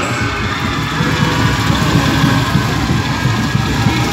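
Loud music from a stage PA system, mostly a heavy bass with short low notes repeating several times a second and faint higher tones above it.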